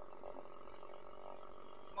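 Quiet background: a faint, steady hum with no distinct events.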